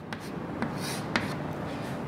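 Chalk writing on a blackboard: strokes drawing a letter and an arrow, with a few short sharp taps of the chalk against the board.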